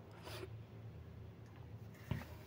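Faint pause between spoken phrases: a low steady hum with one brief soft rustle about a quarter of a second in.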